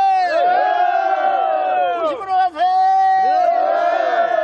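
Korean rice-planting work song sung in call and response. A single voice holds a long note, and a group of voices answers with overlapping notes that slide up and then fall. The pattern happens twice.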